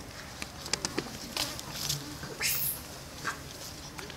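Macaques in an outdoor troop: scattered light clicks and scuffles, then one short high squeal rising steeply in pitch about two and a half seconds in.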